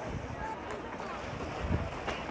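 Steady rushing noise of wind on the microphone, mixed with the splashing of a swimmer's freestyle strokes in a pool.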